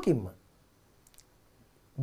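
A man's spoken word trails off with a falling pitch, then a pause of near silence broken by a couple of faint small clicks about a second in.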